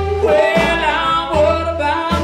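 Blues band playing live: a man sings into the microphone over his hollow-body electric guitar, with a low bass line underneath.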